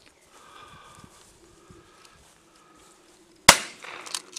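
A single gunshot about three and a half seconds in: one sharp crack with a short ringing tail.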